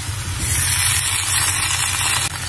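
Water sizzling and hissing in a hot iron tawa on a high gas flame as sweet potatoes are set into it; the hiss grows louder about half a second in. A low steady hum runs beneath.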